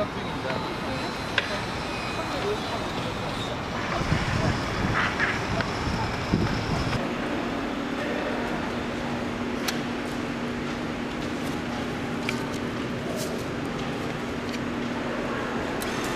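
City street traffic noise with wind on the microphone, then, after a sudden change about seven seconds in, a steady low hum inside a transit station. A few sharp clicks sound while a ticket vending machine is used.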